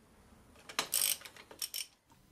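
Hand tools working the engine-mount bolts: a ratchet socket wrench clicking, with metal clinks against the bolt and bracket. The clicks come in a short, uneven run starting about two thirds of a second in.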